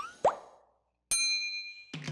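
Cartoon sound effects for an animated logo: a quick 'bloop' that rises in pitch just after the start, a moment of silence, then a bright bell-like ding about a second in that rings and fades.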